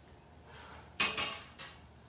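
Kitchen tongs clatter once against a skillet about a second in, followed by a smaller knock.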